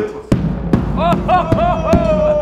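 Large marching bass drum, worn on a chest harness, struck with a stick four times at uneven intervals, each hit a deep boom.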